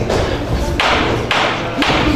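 Punches from boxing gloves landing in an exchange: three quick thuds in the second half.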